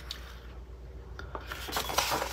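Paper rubbing and rustling as hands slide across and flip the pages of a paper logbook, with a few light ticks in the second half.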